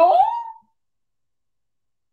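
A woman's drawn-out, sarcastic "oh" that slides up in pitch and trails off about half a second in.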